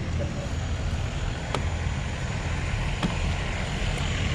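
Steady roadside background noise, mostly a low rumble of traffic. Two faint ticks come about a second and a half apart in the middle.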